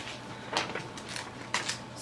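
Sheets of gift wrapping paper rustling and crinkling as they are handled and unfolded, with a few short crackles.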